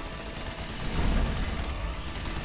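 Action-film soundtrack: music mixed with dense action sound effects, with a deep rumble swelling about a second in.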